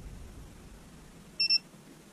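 VIFLY Beacon wireless drone buzzer giving one short, high beep about one and a half seconds in, while its programming button is pressed.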